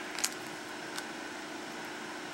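Steady low background hum, like a fan or air conditioner running, with a couple of faint clicks about a quarter second in and at one second.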